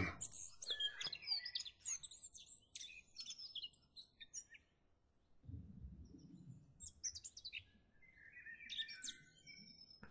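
Birds chirping faintly in short, scattered calls, with a brief low rumble about halfway through.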